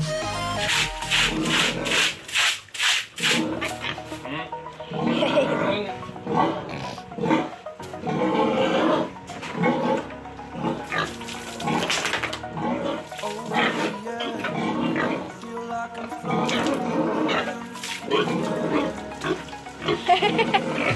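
A domestic sow calling repeatedly in short separate calls, over background music.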